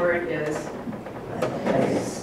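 Speech: a few words in a lecture room, with a short click about one and a half seconds in.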